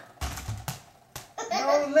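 A muffled thump followed by two sharp knocks in the first second or so, then a man's voice starts near the end.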